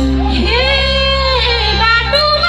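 Music with a high singing voice holding one long, bending note over a steady low bass.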